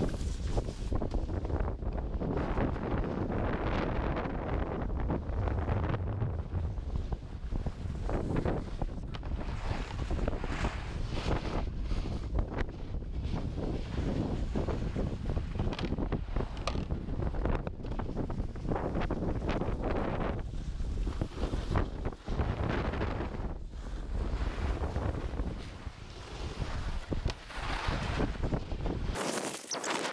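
Wind buffeting a moving action camera's microphone, with the steady hiss and scrape of a snowboard sliding and carving over groomed snow.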